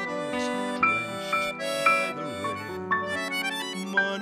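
Accordion playing a melody of held notes that change about every half second, over keyboard accompaniment, in an instrumental passage of the song.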